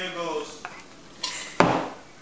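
A brief vocal sound at the start, then a single sharp clatter of tableware about a second and a half in, the loudest sound here.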